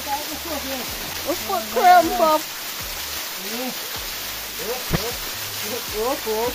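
A waterfall pouring and splashing steadily, with a woman's wordless laughs and exclamations over it, loudest about two seconds in.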